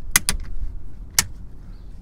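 Plastic retaining catches of a replacement clock spring snapping into place on a Toyota Prius steering column: two sharp clicks close together, then a third about a second later.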